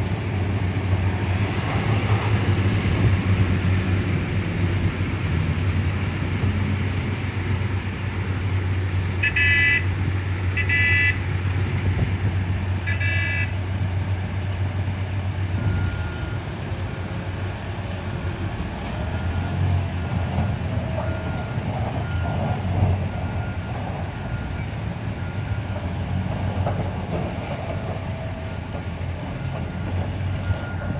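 Hitachi rigid haul truck's diesel engine running with a steady low drone. About nine seconds in, a horn gives three short toots. From about halfway, reversing beeps sound about once a second as the truck backs up.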